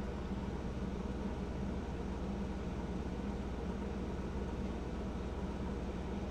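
Steady low hum and hiss of background room noise picked up by the microphone, with no distinct event.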